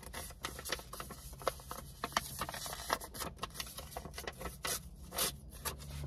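A sheet of paper being torn into a strip and handled: a steady run of irregular crackles and rustles.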